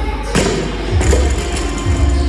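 Barbell with rubber bumper plates dropped from overhead onto a rubber gym floor: a sharp thud about a third of a second in, then a second knock about a second in as it bounces. Music with a heavy bass beat plays throughout.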